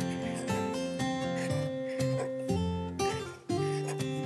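Background music: a strummed acoustic guitar playing a sequence of sustained chords.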